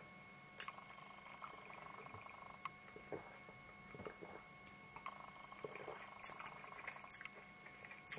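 Faint sipping and swallowing of beer from a pint glass, with a few small soft clicks, over a faint steady hum.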